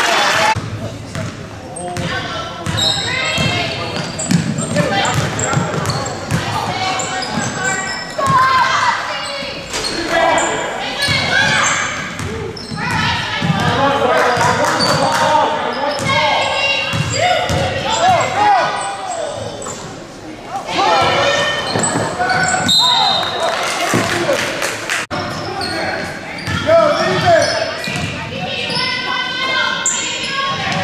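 Basketball dribbled on a hardwood gym floor during play, under a steady background of indistinct players' and spectators' voices in a large gym.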